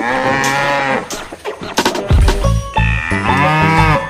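A cow mooing twice: one long call in the first second and another starting near the end, over background music.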